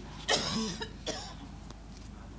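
A person coughs once, a short rough burst about a third of a second in.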